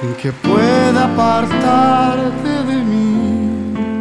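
Grand piano playing a slow bolero accompaniment, with a man's voice singing one long, wavering phrase over it from about half a second in until about three seconds in.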